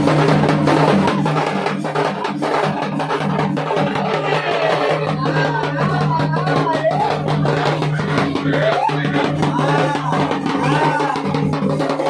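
Large double-headed barrel drums beaten fast and continuously with sticks, as festival drumming. From about four seconds in, high wavering calls rise over the drums.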